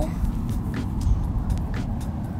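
Steady low outdoor rumble with a few faint short clicks and rustles of hands and debris.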